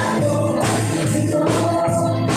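A live worship band playing a gospel song, with keyboard and electric guitar, while a group sings along. The beat is steady, about two to the second.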